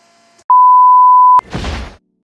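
Edited-in electronic beep tone, loud and steady at one pitch, held for about a second and cut off by a sharp click, followed by a short burst of noise.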